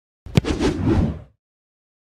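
Intro sound effect: one sharp thud about a third of a second in, followed by a whoosh that fades out within about a second.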